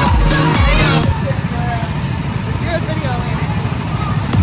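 Music with a steady beat for about a second, then small go-kart gasoline engines running as a low, rough drone, with people's voices over it.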